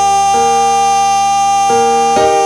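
A man singing one long, steady high note into a microphone over keyboard chords, which change twice beneath him.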